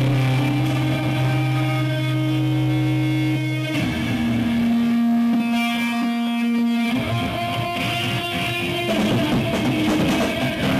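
Live rock band played through amplifiers, with electric guitar holding long sustained notes. The low end drops out a few seconds in, leaving a single held guitar note ringing. The full band comes back in a few seconds later.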